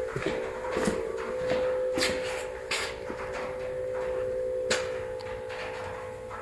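A steady mid-pitched hum that stops near the end, with a few separate sharp knocks and clicks.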